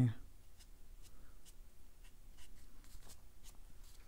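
Flat watercolor brush working on cotton cold-press paper: faint, scattered light taps and soft scratchy strokes as paint is dabbed in.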